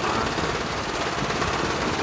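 Small engine of a tracked farm machine running steadily, with a fast, even pulse.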